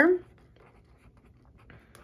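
Pen writing on a lined notebook page: a faint run of short scratching strokes as the words are written out.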